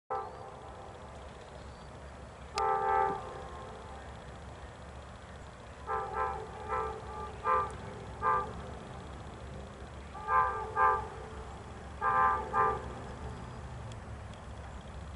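Amtrak Coast Starlight's lead diesel locomotive sounding its multi-chime air horn as it approaches, over a low steady rumble. It gives one blast of about half a second, then a string of about nine short toots in pairs and small groups.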